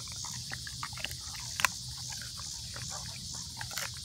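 A German Shepherd chewing and crunching a frozen raw chicken foot: irregular sharp cracks and clicks of teeth on frozen bone and skin.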